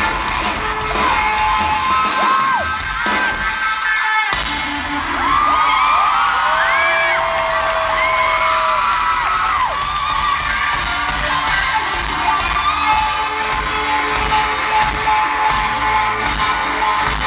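Live pop-rock band playing through the sound system, with acoustic guitar, electric bass and drums, recorded from the crowd. The bass and drums drop out briefly and the full band comes back in about four seconds in, with high screams and voices from the crowd over the music.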